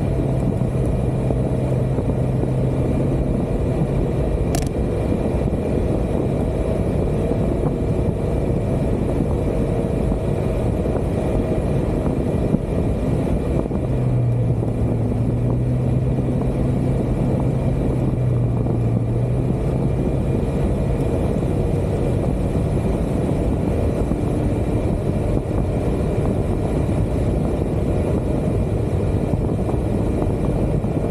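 Wind rushing over the microphone with road noise from a Yamaha Xmax scooter riding at speed. The scooter's single-cylinder engine drone shows as a steady hum at the start and again for several seconds about halfway through. A single short click comes about four and a half seconds in.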